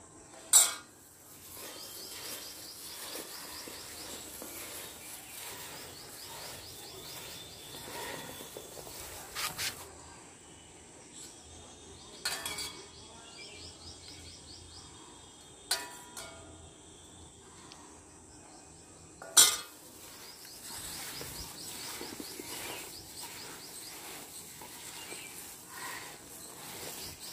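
A steel ladle knocking and clinking against a large steel mixing bowl, about five sharp knocks spread out, the loudest just after the start and about two-thirds through, with quiet stirring of oil and spiced mango pieces in between.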